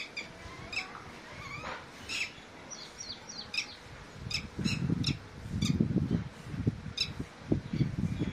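Red-wattled lapwing calling: short, sharp, high notes repeated about every half second. Low muffled rumbles come in twice, about halfway through and near the end, louder than the calls.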